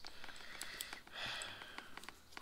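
Faint handling sounds of a helmet chin strap being worked into a plastic quick-release buckle: small scattered clicks and a soft rustle of nylon webbing about a second in.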